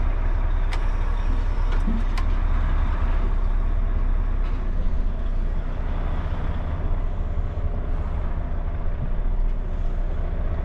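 Volvo lorry's diesel engine running at low speed during a slow, tight turn, heard from inside the cab as a steady deep rumble. A few sharp clicks come in the first couple of seconds.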